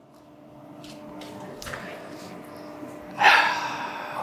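Steady hum of a MaxVac extraction unit running near full power, swelling slightly. About three seconds in comes a short, loud, breathy huff.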